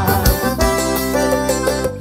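Live forró music with no singing: an instrumental passage on a Yamaha PSR-SX900 keyboard, with two drum beats and then a held chord that drops away just before the end.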